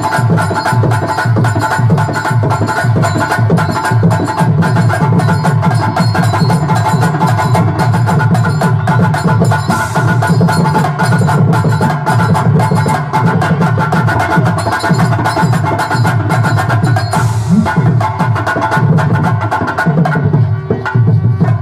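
Live folk-drama band music: fast, dense hand drumming on a pair of tabla-like drums with a drum kit, over steady sustained harmonium notes.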